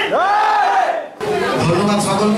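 A loud shouted cry from performers' voices in unison, sweeping up in pitch, held for most of a second, then falling away and breaking off abruptly. A man's speaking voice follows.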